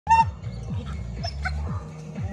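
A single dog bark right at the start, over background music with a low, falling beat about twice a second.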